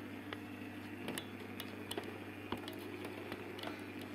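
Scattered light clicks and taps of small plastic toy figurines being handled and set on a table, over a steady low electrical hum.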